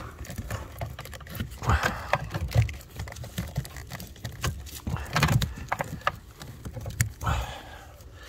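Irregular clicks, taps and rustling from hands working among plastic trim and wiring connectors in a car's footwell.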